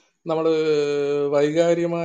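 A man's voice chanting one long, held syllable at a steady pitch, starting a moment after a brief silence.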